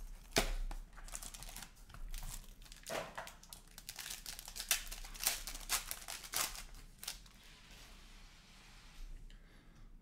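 Foil trading-card pack being torn open and crumpled in the hands, with the cardboard box handled first: a run of sharp crackles and rips, the loudest about half a second in, easing to a faint rustle for the last few seconds.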